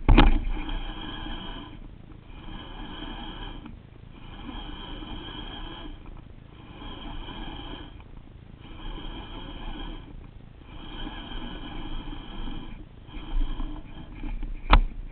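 Bait finesse (BFS) baitcasting reel being cranked in a stop-and-go retrieve: runs of steady gear whirring about a second and a half long, broken by short pauses, about eight times over. A sharp click right at the start.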